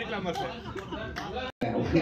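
Speech: a man talking, with background chatter. All sound cuts out for a split second about one and a half seconds in.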